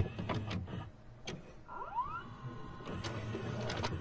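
Videocassette recorder mechanism: a few sharp clicks and clunks, then a small motor whirring, with a whine rising in pitch about halfway through, as a tape loads and starts to play.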